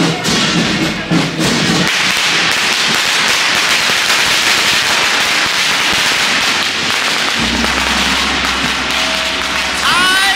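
A long string of firecrackers going off in a dense, continuous crackle from about two seconds in. It follows a couple of seconds of rhythmic percussion thumps.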